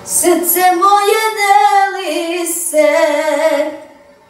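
A young boy singing unaccompanied into a microphone: a single high voice in two long held phrases, with a short break about two seconds in, fading out near the end.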